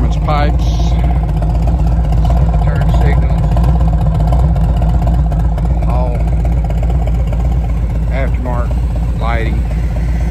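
2022 Harley-Davidson Street Glide Special's Milwaukee-Eight 114 V-twin idling steadily through its aftermarket exhaust pipes, with no revving.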